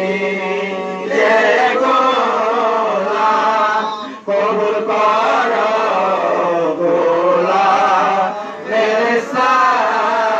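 Men chanting a devotional Sufi zikr chant, a lead voice on a microphone carrying over the others, amplified through a PA. The chanting runs on in long bending phrases, with a short break about four seconds in.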